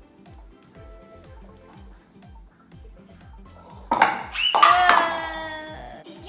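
Light background music with a steady beat. About four seconds in comes a sudden loud clatter as a stacked tower of paper cups collapses, with a voice crying out, falling in pitch.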